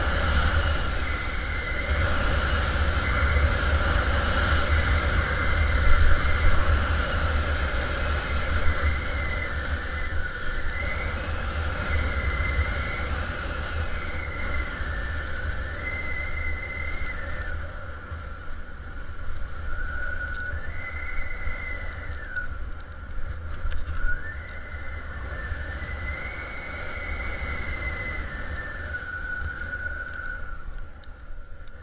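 Skis hissing through deep off-piste snow, with wind rumbling on the microphone, during a freeride descent; a thin high whine steps up and down in pitch throughout. The rumble eases in the second half.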